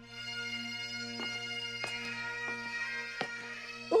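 Bagpipes playing: a steady drone under a chanter tune.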